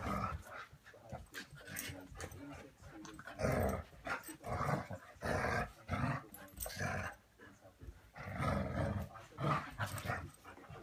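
Dogs growling in play while tugging on a toy, in a string of short rough growls with brief pauses.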